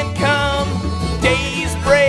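Live bluegrass band playing, with fiddle, mandolin, acoustic guitar and upright bass.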